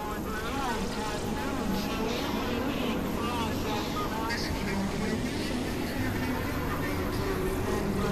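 Experimental electronic noise music: a dense, steady wash of low rumbling noise and hum, with short warbling tones that glide up and down and garbled, voice-like fragments.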